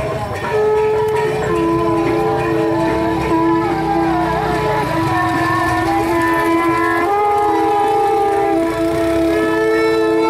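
Long, steady held notes from a wind instrument, two notes often sounding together and changing pitch every few seconds, over a low murmur of crowd voices.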